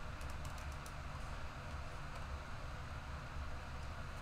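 A few faint, light clicks in the first second or so, over a steady low electrical hum.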